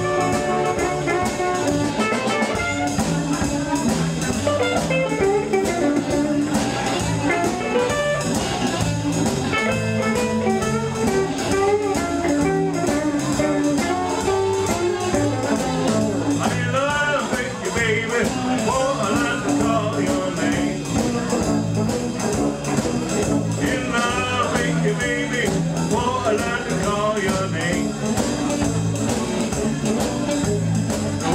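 Live Chicago blues band playing an instrumental passage: amplified blues harmonica held to the mouth, playing bent, wavering notes over electric guitar, electric bass and drums.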